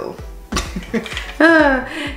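A woman's wordless vocal sound: a short noise about half a second in, then a drawn-out voiced sound falling in pitch a little over a second in, leading into a laugh.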